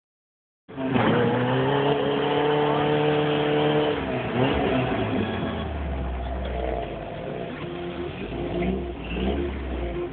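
A 4x4's engine revving hard, heard from inside the cab. It climbs about a second in, holds a high steady pitch for about three seconds, then drops back to a lower, uneven run.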